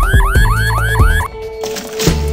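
Cartoon emergency siren yelping in quick rising sweeps, about four a second, over background music with a heavy beat; the siren stops a little over a second in.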